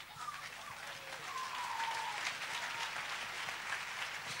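Congregation applauding, faint and swelling about a second in, with one drawn-out, slightly falling voice call over it.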